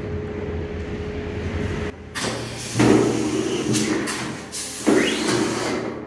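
Pneumatic semi-automatic screen printing machine running a print cycle on a non-woven bag: several loud strokes of air hissing and sliding, starting about two seconds in, with another surge near five seconds.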